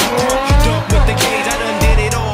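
Nissan GT-R R35 engine note rising as the car accelerates, laid over hip-hop music with a heavy bass beat.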